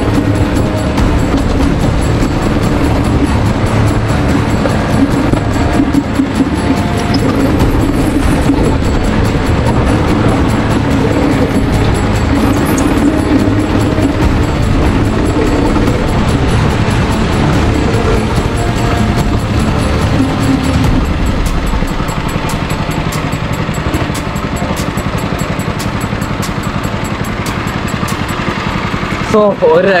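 Rental go-kart engine running under way round the track, heard onboard, with background music over it. The engine noise eases off about two-thirds of the way through as the kart slows.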